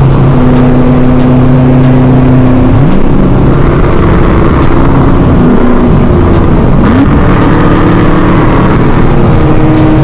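C6 Corvette's V8 engine running hard at highway speed, heard from inside the cabin. Its pitch climbs about three seconds in and again near seven seconds.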